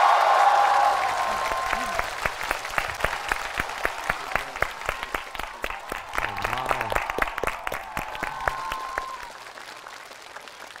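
Audience applauding at the end of a song: a dense, loud round of clapping at first that thins to separate, scattered claps and fades out near the end.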